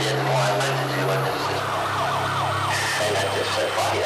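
Hardcore electronic track played loud: a held bass note that drops lower about a third of the way in, under a run of quick falling synth glides and hi-hat ticks.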